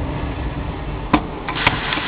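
Steady rushing noise of a wood-fired gasification boiler running with its firebox door open on burning logs, with two sharp clicks, one a little past a second in and another about half a second later.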